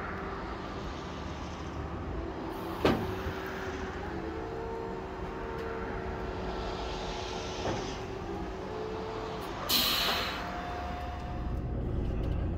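Car-transporter truck's hydraulic system running as the driver works the deck controls: a steady mechanical hum with a held whine, two sharp clicks, and a short burst of hiss about ten seconds in.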